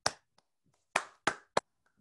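One person clapping hands: four sharp claps, one at the start and three close together in the second half, heard over a video call.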